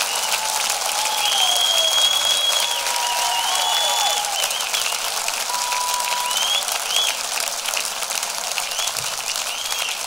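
A concert audience applauding steadily, with several long shrill whistles over the clapping. The applause eases a little in the second half.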